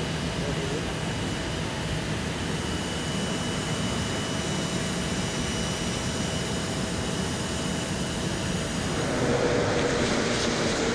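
Steady jet aircraft noise: an even rush with a faint high, constant whine held throughout. About a second before the end, the sound changes.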